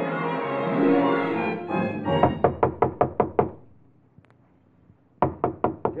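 A short orchestral music cue ends about two seconds in. It is followed by a quick run of about seven knocks on a cabin door, a pause of about a second and a half, and another quick run of knocks: a radio-drama door-knocking sound effect.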